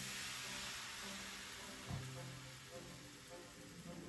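Crêpe batter sizzling as it is poured onto a hot, oiled crêpe pan: a hiss that is strongest as the batter lands and slowly dies away.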